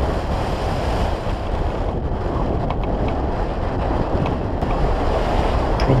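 Wind rushing over the microphone of a wing-mounted camera on a hang glider in flight: a loud, steady rumble of airflow, heaviest in the low end.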